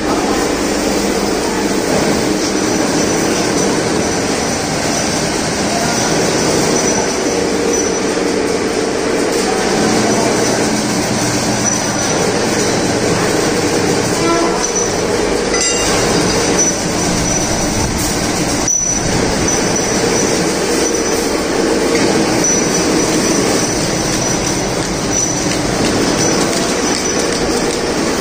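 Continuous loud din of chain-link fence factory machinery running, a steady mechanical clatter with a faint high whine that comes and goes.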